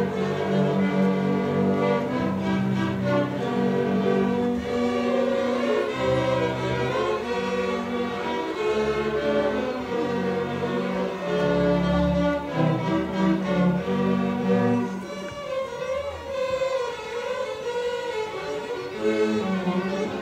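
A student string orchestra of violins, cellos and bass playing a holiday piece together. It grows softer for a few seconds about three-quarters of the way through, then the full section comes back in near the end.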